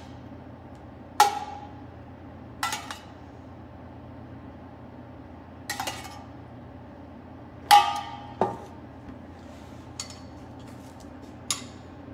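Metal tongs clinking against a small metal pan while roasted sunchokes are picked out. About seven separate sharp clinks with a brief ring, the loudest about eight seconds in.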